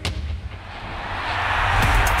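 Intro sound design for a TV show: a sharp boom-like hit at the start, then a rising whooshing swell that builds back into an electronic music track with a low beat near the end.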